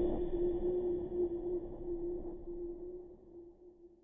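The tail of a logo sting: one steady held tone over a noisy wash, slowly dying away to near silence by the end.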